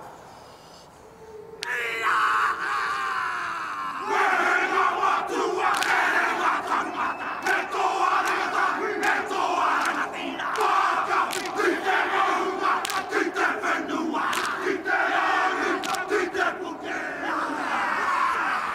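Māori haka performed by a rugby team: a line of men shouting the chant in unison, punctuated by many sharp slaps. It begins after a brief lull and turns loud and continuous about four seconds in.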